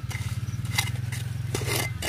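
Steel bricklayer's trowel scraping dry soil over ground wet with liquid manure, a few short scrapes, the last one longest. Under it runs a steady, low motor drone.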